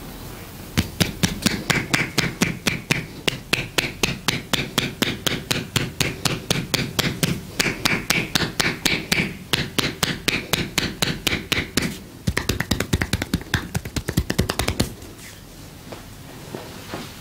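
Percussive hand massage: palms and the edges of clasped hands striking bare skin on the shoulders and upper back in an even run of about five slaps a second. About twelve seconds in the strikes quicken to a faster patter, then stop shortly before the end.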